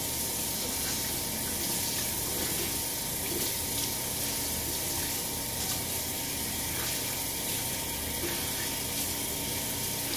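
Bathroom tap running steadily into a sink while a soapy towel is rinsed under it to wash the soap out.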